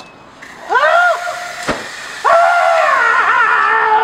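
A person screaming: a short scream that rises and falls about a second in, then a long, high, wavering scream from just past two seconds on. A sharp click falls between the two.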